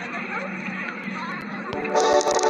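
Indistinct voices chattering, with no clear words. Music comes in near the end.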